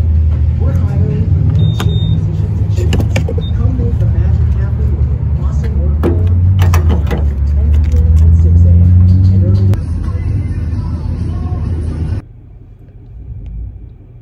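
Vehicle engine idling loudly at a gas station fuel pump, a steady low rumble with scattered clicks and a short high beep about two seconds in. The rumble cuts off suddenly near the end.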